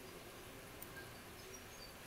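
Low room hiss with a couple of faint ticks about a second in, from a steel lock pick tapping the top pins of a City R14 euro cylinder held under tension.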